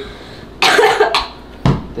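A person coughing: one longer breathy cough and a short second one, then a brief low thump near the end.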